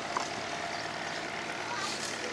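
Steady outdoor background noise: an even hum of distant engines, with a faint steady tone running through it.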